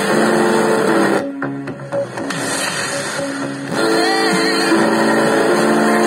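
Music from a Sony ICF-6500W radio's speaker as it is tuned across the FM band. The sound breaks off a little over a second in as it moves between stations, and music comes back in about four seconds in.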